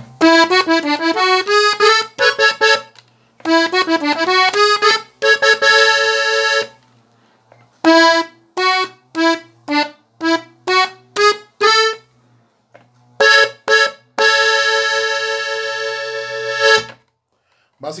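Hohner Compadre three-row button accordion, tuned in E, playing a closing passage in the key of A. Quick runs of melody notes give way to short detached chords, ending on a long held chord that stops shortly before the end.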